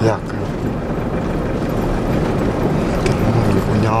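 Steady engine and tyre rumble heard inside a car moving along an unpaved dirt road.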